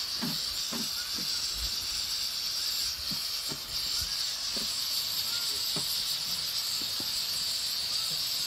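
Prawn fried rice sizzling with a steady hiss in a large pan while a spatula stirs it, with soft, irregular scrapes and knocks of the spatula against the pan.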